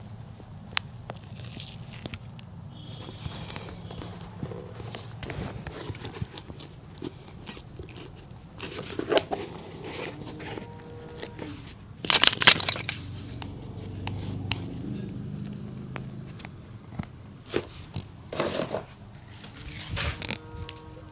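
A worn leather shoe being handled and worked with a cobbler's awl: scattered small clicks, scratches and rustles, with a louder burst of scraping about twelve seconds in and another shorter one near the end, over a steady low hum.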